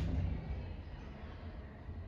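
Steady low hum of room tone inside a stationary elevator cab, with no distinct events.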